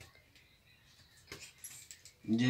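Near silence, then a few faint short clicks late on, from small objects being handled.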